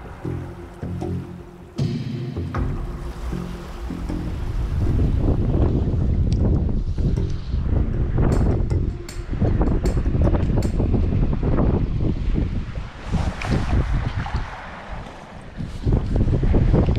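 Music for the first few seconds, then wind buffeting the microphone with splashing and sloshing of shallow water as someone wades.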